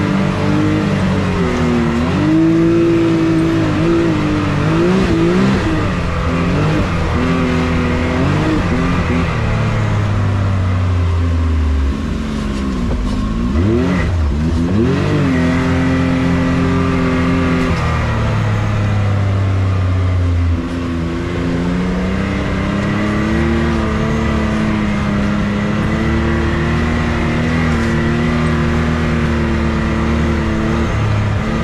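Can-Am Maverick X3's turbocharged three-cylinder engine, heard from the cockpit, running under constantly changing throttle on a rough trail. The revs rise and fall again and again, with a few quick blips in the middle.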